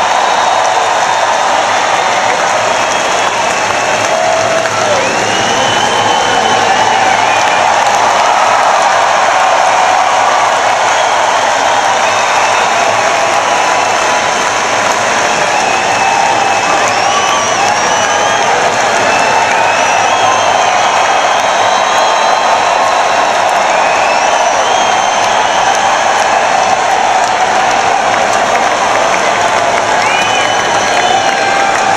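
A large arena crowd applauding and cheering without a break, with high calls sliding up and down above it now and then.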